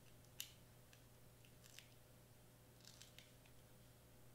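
Near silence over a low steady hum, broken by a few faint clicks and rustles of hands handling cardstock hearts and foam adhesive squares, the clearest about half a second in.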